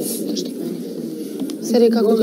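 Indistinct chatter of several people talking at once in a room, with one voice coming through clearly near the end.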